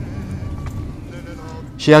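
Steady low rumble inside a moving or idling car's cabin, with faint sounds in the background; a narrating voice comes in near the end.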